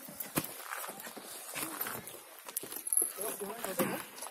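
Footsteps in sandals on rough stone steps, a few sharp taps and scuffs, with people's voices talking near the end.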